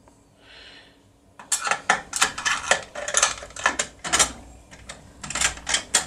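Steel lock-picking tools clicking and scraping in the keyhole of a CR (Serrature) lever lock: after a short quiet start, a rapid, irregular run of sharp metallic clicks.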